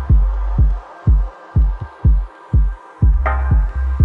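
Dub techno track: a steady kick drum about two beats a second over deep sustained bass notes, with a chord stab a little past three seconds in that fades away.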